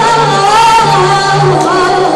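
A woman singing live into a microphone, a wavering, ornamented Arabic melody, with a small band holding repeated low notes underneath.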